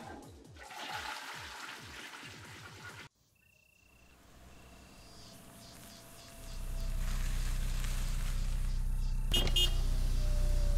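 A toilet flushing for a few seconds, cut off abruptly. Then come a few faint short high beeps, and about six seconds in a low steady hum of an idling car engine begins, with a brief click near the end.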